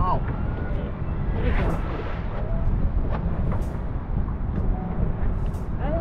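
A boat's engine running under way, a steady low rumble with water and wind noise, and brief hisses about every two seconds.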